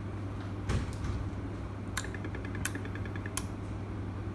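Nice Robus sliding gate motor control unit with a steady low electrical hum. A few sharp clicks and a rapid run of short high beeps lasting about a second and a half come during the Blue Bus search on the slave motor, while its L1 and L2 LEDs flash quickly.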